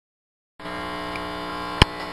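Steady electrical hum and buzz from a band's guitar or bass amplifiers, starting suddenly about half a second in, with one sharp click near the end.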